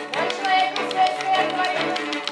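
A small live string ensemble of violins and cello playing: a held, slightly wavering melody line over a sustained low note, with many short, sharp notes running through it.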